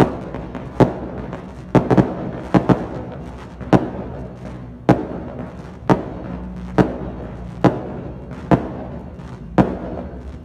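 A volley of aerial fireworks bursting overhead, a sharp bang about once a second, each trailing off before the next.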